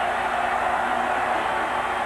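Steady crowd noise from a college football stadium during a two-point conversion play, heard through a TV broadcast.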